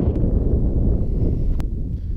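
Wind buffeting the microphone outdoors: a loud, steady low rumble, with one brief click about one and a half seconds in.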